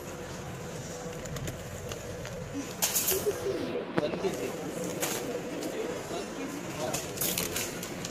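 Supermarket aisle background of indistinct shoppers' voices, with a wire shopping trolley being pushed over a tiled floor and clattering in short bursts about three, four, five and seven seconds in.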